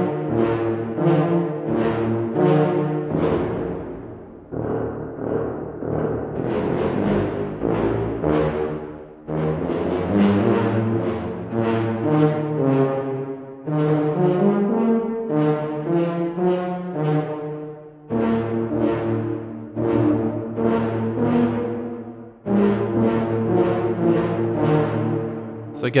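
Sampled tuba from the Fluid Brass virtual instrument playing runs of short, detached brass notes, several a second, with brief pauses between phrases.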